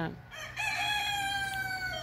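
A rooster crowing: one long call starting about half a second in and sagging slightly in pitch toward the end.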